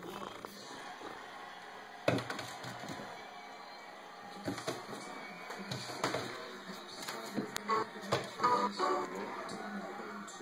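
Turkish Angora kitten's paws knocking and scratching against a door as it leaps at a laser dot: a few sharp knocks, the loudest about two seconds in, more in the second half. Television music and talk run underneath.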